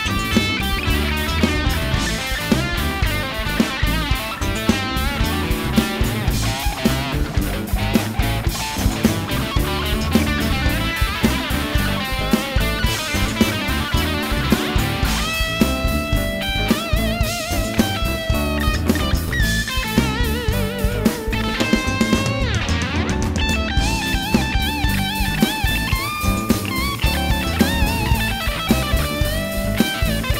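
Electric guitar solo on a sunburst semi-hollow-body guitar, single-note lines over a live band's funk groove of drums and bass, with wavering, bent notes in the second half.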